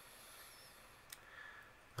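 Near silence: room tone, with one faint click just after a second in.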